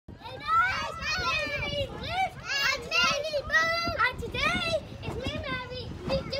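Young children's high-pitched voices calling out continuously as they bounce on a trampoline, with soft thuds of their feet on the mat underneath.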